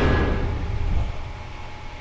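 A horror film trailer's closing low rumble dying away over about the first second, leaving a quiet low hum.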